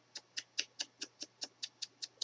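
Foam pad of a Tim Holtz distress ink tool dabbed quickly and lightly against the edges of a small paper punch-out to ink them, about five soft pats a second.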